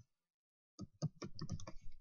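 Typing on a computer keyboard: a quick run of about ten keystrokes starting a little under a second in, a single word being typed.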